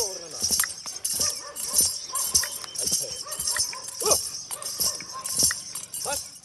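A dancing white horse stamping its hooves on grass in a quick, uneven rhythm, with bells on its legs jingling at each step. Short pitched calls break in a few times, one at the start and one about four seconds in.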